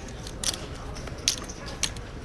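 Three light, sharp clicks of poker chips and cards handled at the table, over a steady low room hum.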